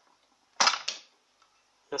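A sharp plastic snap, with a second smaller one just after, about half a second in: the plastic top cover of a Singer Precisa sewing machine coming free of its clips as it is pulled off.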